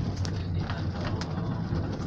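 Steady low rumble of a moving cable-car cabin, with a few faint clicks.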